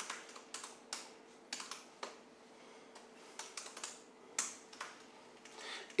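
Scattered laptop keystrokes: a few separate, irregular key clicks over several seconds as keys are pressed to switch files in a text editor. A faint steady hum lies underneath.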